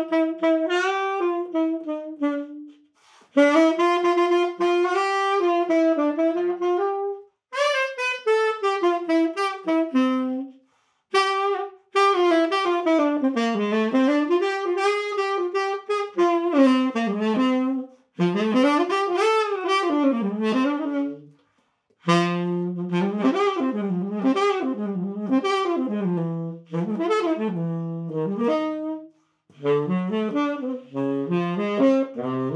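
Relacquered 1963 Selmer Mark VI tenor saxophone played solo and unaccompanied, in a run of melodic phrases broken by short breath pauses. The last long phrase drops into the horn's low register. The tone is focused and forward, with a slight edge.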